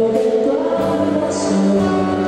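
Cello bowed in long, sustained notes, moving to a new note near the start and again near the end, with a brief high hiss partway through.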